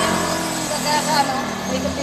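A steady low engine-like hum with faint voices over it.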